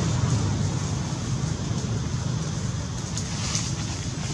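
Steady low outdoor background rumble, easing a little over the few seconds, with a few faint ticks near the end.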